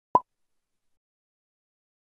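A single short plop sound effect from the channel's logo intro animation.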